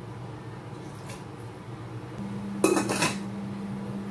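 Aluminium cooking pot and its lid clattering as the lid is set on, a short metallic clatter about two and a half seconds in, after quieter handling knocks at the pot.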